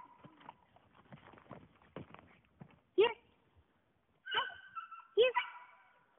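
Labrador retriever puppy giving two short, sharp yips, about three and five seconds in, with a whine between them, over faint scuffling.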